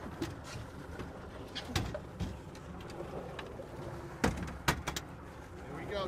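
Wind and water noise around the boat, broken by a few sharp knocks as the landing net and the false albacore are brought aboard: one about two seconds in, then two close together a little past four seconds.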